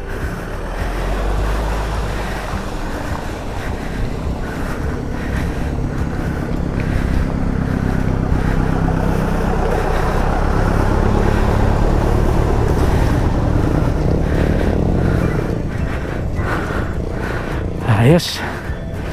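Motor vehicles running through floodwater on a road, with water splashing and wind on the microphone. The sound swells through the middle as a small truck passes close by, pushing a wake.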